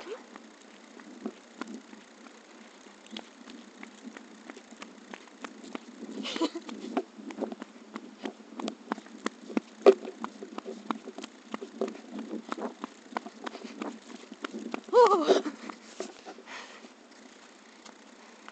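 Running footsteps slapping on asphalt, with the handheld phone jostling and knocking in an irregular stream of thuds and clicks. The footsteps start a few seconds in and stop just before the end. About 15 seconds in there is a short vocal sound that rises and falls in pitch.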